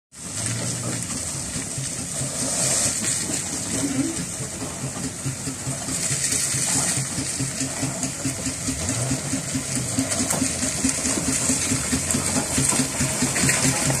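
Burrell steam traction engine approaching under steam: a regular, even beat over a steady hiss of steam, growing louder as it nears.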